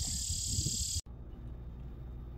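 Steady high chirring of night insects, such as crickets, over a low outdoor rumble. About a second in it cuts off abruptly to quiet room tone with a low hum.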